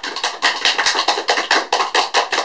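Applause: many hands clapping in a fast, irregular patter.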